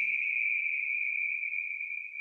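A steady high-pitched whine held on one pitch, a background tone in the recording that is heard plainly in the pause between words.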